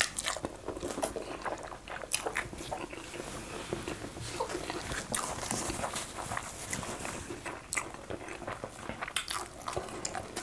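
Close-up mouth sounds of eating fufu with slimy okro soup by hand: wet biting and chewing with many short, irregular clicks.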